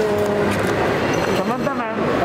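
Busy crowd hubbub in an airport hall: a dense, steady wash of overlapping voices and movement, with one voice calling out clearly near the end.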